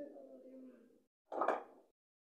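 A wordless voice for about the first second, then a single sharp thump about a second and a half in.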